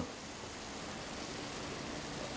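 Milk and blue cheese sauce simmering around hamburg steaks in a frying pan over low heat, a steady soft hiss of bubbling.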